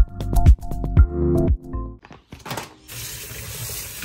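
Electronic music with a steady beat that stops a little under two seconds in. About three seconds in, tap water starts running onto leaves in a plastic colander in a steel sink, a steady splashing rush.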